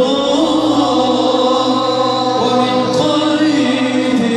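Male choir singing an Arabic devotional song (nasheed) together, the voices holding long, gliding melodic lines; a steady low drone joins about a second in.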